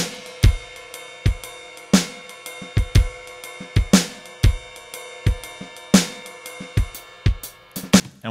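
A shuffle drum groove from a MIDI clip played through a General MIDI synth drum kit: kick and snare under a ringing ride cymbal. A crash cymbal lands about every two seconds, on the first beat of each bar.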